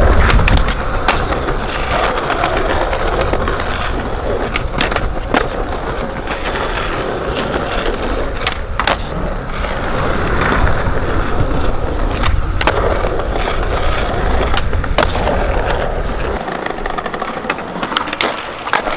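Skateboard wheels rolling over rough pavement with a steady rumble, broken several times by sharp clacks of the board striking the ground. Near the end the rolling rumble drops away.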